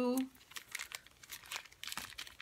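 Thin plastic packaging crinkling as it is handled, a quick, irregular run of crackles.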